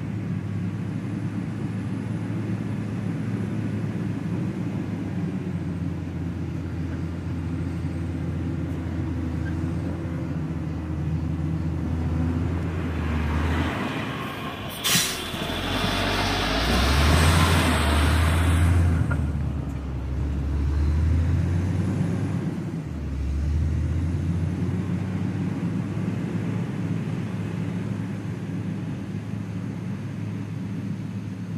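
Caterpillar 120K motor grader's diesel engine running steadily as the machine blades soil. It grows louder as the grader passes close by in the middle, with a sharp click about halfway through, then settles back to a steady hum.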